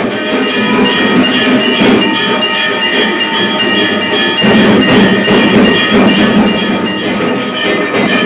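Temple bells ringing rapidly and without a break during a puja aarti, with drum beats underneath.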